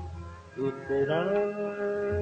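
Live ghazal music. A pitched note with overtones slides upward about a second in and is then held steady, over low, deep pulses at the start.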